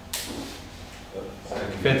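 A man speaking, starting about a second in, after a brief hissing burst near the start.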